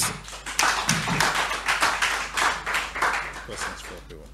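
A small crowd of people applauding, with a few voices calling out among the clapping. The applause dies down near the end.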